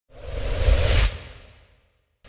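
A whoosh transition sound effect with a deep rumble underneath. It swells over most of a second and then fades away.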